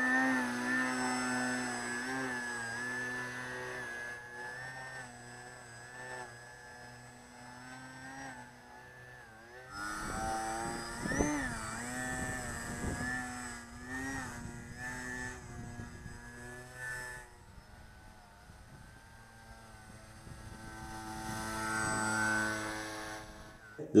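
Brushless electric motor and 10x6 propeller of a small foam RC biplane whining steadily in flight, its pitch shifting as the throttle is worked, most sharply about eleven seconds in. A rushing noise joins it for several seconds from about ten seconds in.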